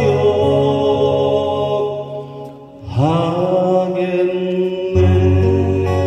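Slow ballad played live by an acoustic guitar duo, with long held notes. The sound dips briefly about two and a half seconds in, then a new note slides up into place and the music carries on.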